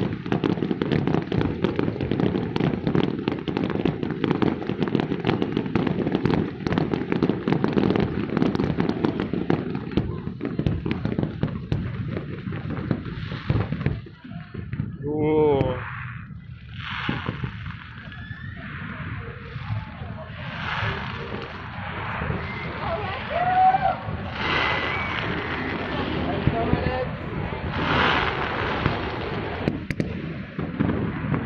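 Aerial fireworks bursting in a dense, continuous barrage of bangs and crackles that sounds like a thunderstorm. About halfway through the barrage thins out into separate scattered bursts.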